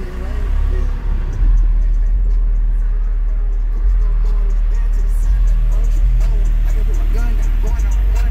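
Hip hop music played loud on a truck's car-audio system: two DB Drive WDX G5 10-inch subwoofers driven by a Rockford Fosgate 1500BDCP amplifier at 2 ohms. Deep bass notes dominate, each held for a second or two before the next, with rap vocals above.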